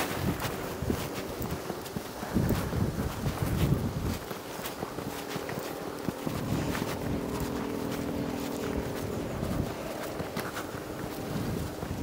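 Footsteps on a sandy path with traffic noise from a busy main road in the background; a steady hum stands out for a few seconds past the middle.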